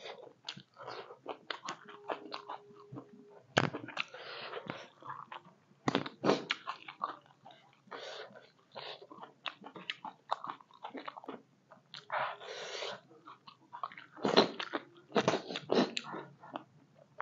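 Close-miked chewing and crunching of a mouthful of silkworms with egg and king chilli, in irregular bursts of crackling with a few sharper crunches.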